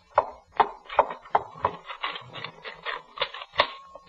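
Manual typewriter keys being struck in an uneven run of clicks that grows quicker, with a short ringing tone near the end.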